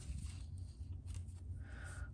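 Faint handling noise of coin holders on a tabletop: a few light clicks and a brief rustle over a low steady hum.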